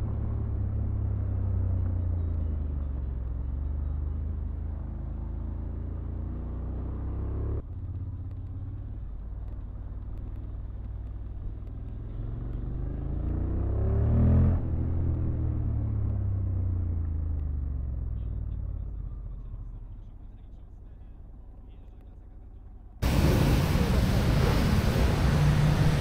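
Honda motorcycle engine and road noise as heard by the rider, muffled and low: the note rises to a peak about halfway through, then eases off and fades as the bike slows. About three seconds before the end a much louder, harsher noise cuts in suddenly.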